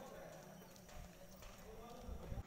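Faint distant voices with a few light ticks, barely above silence.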